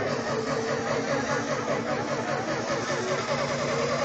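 Electronic dance music over a festival sound system, poorly recorded: a repeating synth figure of short rising glides over a steady low held note, with a long rising sweep near the end.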